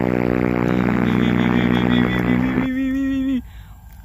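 Edited-in electronic sound effect: a loud, buzzy held tone that cuts off suddenly about two and a half seconds in, then a shorter, lower steady tone that stops about a second later.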